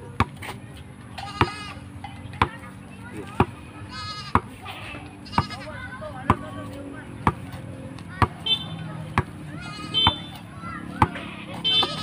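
A basketball bounced on a concrete road in a steady dribble, one sharp bounce about every second.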